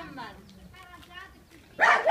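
A dog barks three times in quick succession near the end.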